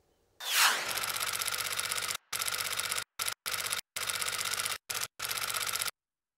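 A short falling whoosh, then rapid mechanical clicking in bursts that cut off suddenly several times.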